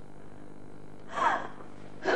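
A woman's short, tearful cry of a single word about a second in, its pitch falling, between sobs.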